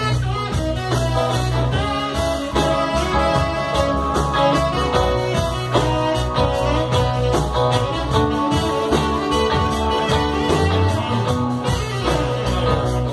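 A live band playing, with a steady beat and a deep bass line, and a saxophone playing over it.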